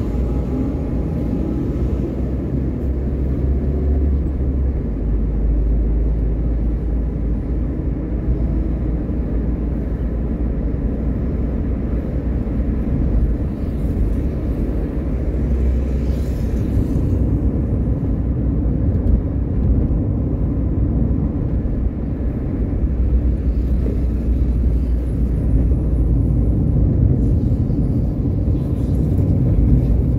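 A car driving at a steady speed, heard from inside the cabin: an even, low rumble of engine and road noise.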